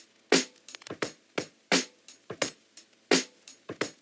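A looped drum break played back through a high-pass filter, its kick and low end cut away so that only the thin upper part of the snare and hi-hat hits is left, repeating in a steady pattern.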